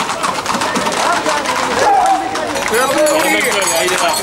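Several people talking and calling out at once, overlapping voices of a street crowd.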